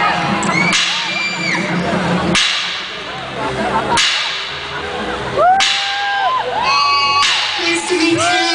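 Live electronic music played loud: sharp crack-like noise hits come about every one and a half seconds, with short arching pitched tones that rise, hold and fall between them.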